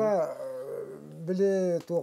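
A man speaking in a low voice, drawing out his vowels, with one long held vowel near the end.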